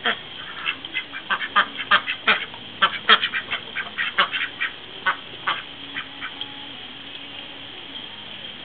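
A small flock of domestic ducks, Indian Runners and Khaki Campbells, quacking in a rapid run of short, loud, overlapping quacks. The quacks thin out and stop about six and a half seconds in.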